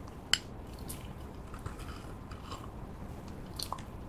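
Clear slime being stirred with a plastic spoon in a glass cup: one sharp click just after the start, then scattered soft sticky squelches and clicks that grow busier near the end.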